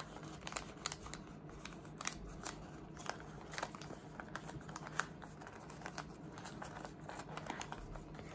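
Folded origami paper rustling and crinkling, with scattered small sharp clicks, as hands tuck the last flaps of a modular paper cube into their pockets.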